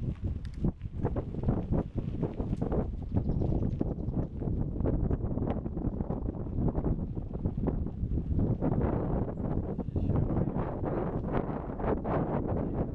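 Wind buffeting the microphone of a camera carried on a moving bicycle, with frequent small knocks and rattles as the bike rolls over the pavement.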